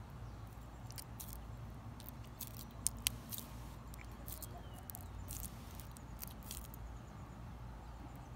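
Hand squeezing and kneading oobleck, a cornstarch-and-water mix, in a bowl: faint, irregular wet clicks and crackles, with two sharper clicks about three seconds in, over a low steady hum.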